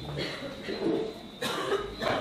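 A person coughs once, sharply, about one and a half seconds in, against faint low voices in the room.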